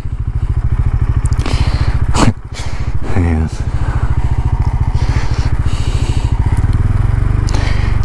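KTM 390 Adventure's single-cylinder engine idling steadily with the bike at a standstill, a fast even low pulsing. A brief vocal sound a little past the middle.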